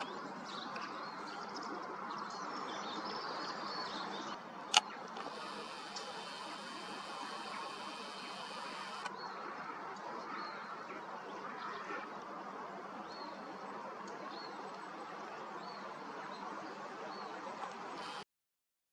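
Steady open-air lake ambience with several faint, short, high-pitched bird calls in the second half, and one sharp click about five seconds in.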